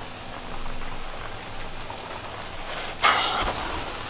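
Carpet extraction wand drawn across carpet, a steady suction hiss, with a sudden loud rush of air about three seconds in.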